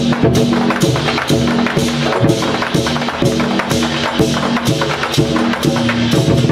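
Chinese war-drum troupe beating large barrel drums with sticks in a fast, dense rhythm, with hand cymbals clashing along.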